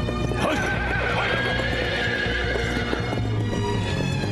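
A horse whinnies loudly for about two and a half seconds, starting about half a second in, over the hoofbeats of a group of horses on hard ground. Background music runs underneath.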